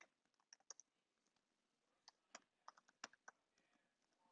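Near silence: quiet room tone with a handful of faint, sharp clicks scattered irregularly through it, like taps on a computer keyboard or mouse.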